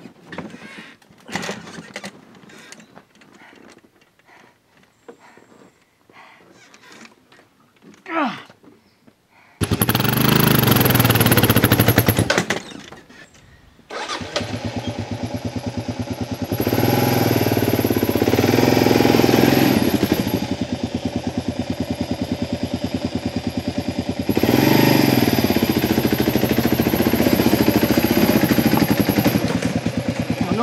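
Kawasaki KLR650's single-cylinder engine coming in abruptly about ten seconds in, dropping out briefly, then running hard with two long swells of revving as the bike is worked up a steep, rocky slope. Before it, scattered scuffs and knocks as the fallen bike is handled.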